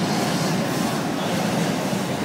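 Hot-air balloon propane burner firing, a steady loud rushing blast of flame noise.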